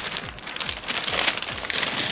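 Masking tape being pulled off its roll and pressed down, a dense rapid crackle with a high hiss.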